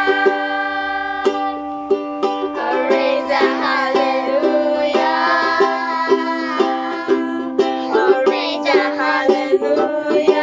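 A woman and two young children singing together to a strummed ukulele, the strums coming in a steady rhythm under the voices.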